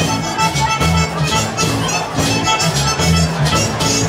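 Live Chicago-style polka band playing an instrumental passage: accordion and concertina over a steady two-beat bass and drums.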